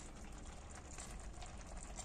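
Faint fine crackling and bubbling of a cabbage and green-lentil stew simmering in a frying pan as its glass lid comes off.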